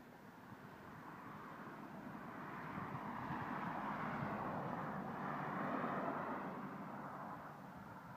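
A passing vehicle: a steady noise that slowly swells, is loudest a little past the middle, then fades away.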